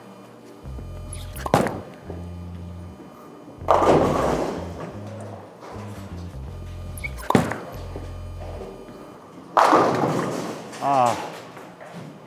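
Two bowling shots. Each begins with a sharp thud as the Purple Hammer reactive ball is laid down on the wooden lane, followed about two seconds later by the clatter of pins being hit, over background music.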